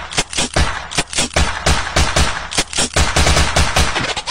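A rapid, uneven run of sharp cracks and low thumps, several a second, like a burst of automatic gunfire, in the soundtrack the dancer moves to.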